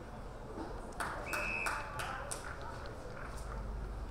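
Outdoor field sound at an Australian rules football match: a steady background bed with voices, then a cluster of sharp smacks or claps starting about a second in, as a high ball is contested. A brief, steady high whistle sounds in the middle of them.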